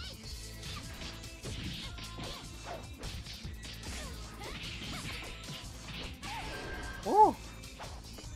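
Animated fight-scene soundtrack: music under a string of punch, kick and crash impact sound effects with whooshes. A short, loud cry comes about seven seconds in.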